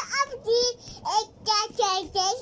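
Toddler singing in a high voice: a string of short sung syllables at a fairly steady pitch.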